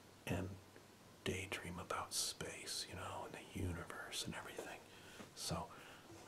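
A man whispering in short phrases with brief pauses between them, his words too soft to make out, with hissing 's' sounds standing out.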